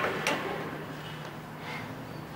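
A porcelain teacup on its saucer set down on a glass coffee table: two sharp clinks about a quarter second apart right at the start, then quiet room tone with a low steady hum.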